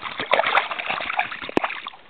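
Splashing in shallow stream water as a hooked brook trout thrashes and a hand grabs at it, with an irregular patter of splashes and one sharp knock about a second and a half in.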